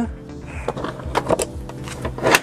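Background music with steady held notes, with a few light clicks and knocks from a hinged fold-down table panel on the outside of a camper van being handled and swung open.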